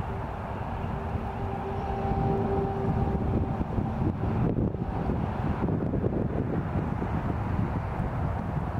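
Outdoor low rumble of wind buffeting the microphone and distant traffic, with a faint steady hum in the first half that fades out.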